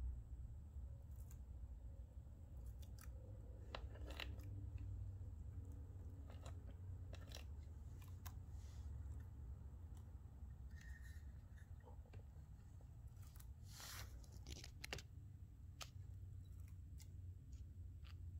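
Faint, sparse clicks and scrapes from a monitor lizard working a whole quail egg in its jaws and shifting in a plastic tub, over a low steady rumble, with a short flurry of clicks about two-thirds of the way through.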